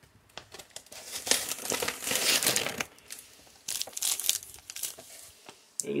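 Plastic and foil MRE ration packaging crinkling as it is handled. There is a longer spell of rustling in the first half and a shorter one about four seconds in.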